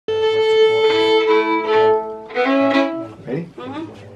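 Two fiddles bowing long, held notes together in a short phrase that breaks off about three seconds in, after which a voice speaks briefly.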